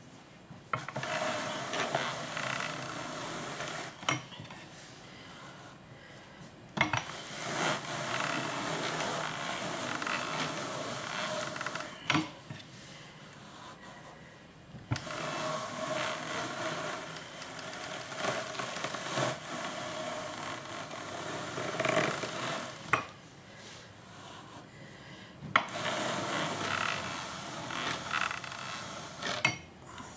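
Hand-cranked drum carder turning, its wire-toothed drums combing through wool fleece: a scratchy whir in four runs of a few seconds each, with short pauses and sharp clicks between them.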